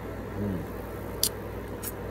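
A man sipping cider from a glass: a short hum in the throat and two small mouth clicks. Under it runs a steady low hum.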